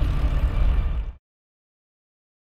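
Tail of an animated logo intro's sound effect: a low rumble with fading hiss that cuts off suddenly a little over a second in.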